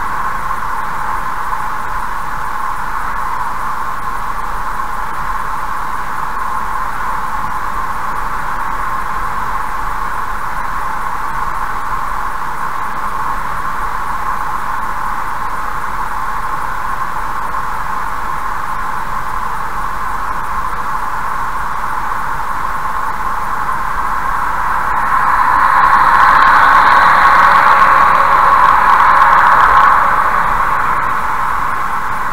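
Steady hiss of tyre and road noise from a car travelling at about 70 km/h, picked up by a dashcam's microphone. It swells noticeably louder over the last few seconds as a semi-trailer truck draws alongside and passes in the next lane.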